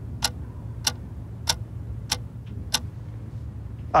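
Sharp, clock-like ticks at an even pace, about one every 0.6 seconds, over a steady low drone: a tension-building ticking effect in a film trailer's score, ending in a loud sudden hit.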